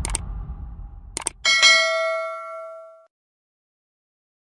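Subscribe-button sound effects: a click, then two quick clicks about a second later, followed by a bright notification-bell ding that rings out and fades over about a second and a half.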